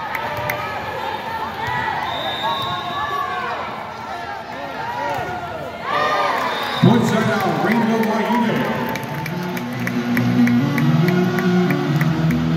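Arena crowd of many voices calling and cheering at a volleyball match, with a louder burst about seven seconds in. After that, music with a steady beat starts playing over the arena's sound system.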